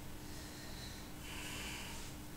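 A man breathing hard through his nose from the strain of weighted pull-ups, with a stronger exhale in the second half.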